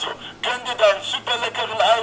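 A man's recorded voice message in German playing from the small sound module built into a promotional gift box, thin-sounding as through a small speaker.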